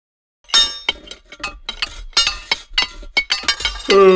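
Cartoon sound effects: a quick run of about a dozen sharp, ringing clinks and clacks, like stone tools striking together. A short shout falls in pitch near the end.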